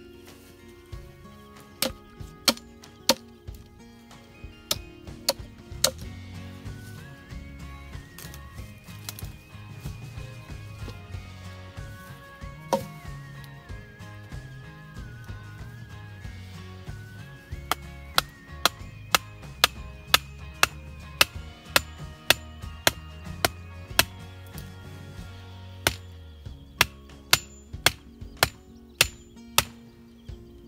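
Small hatchet chopping into a thin wooden pole. There are a few sharp blows in the first several seconds, then a long steady run of about two blows a second through the second half. Background music with held tones and a bass line plays throughout.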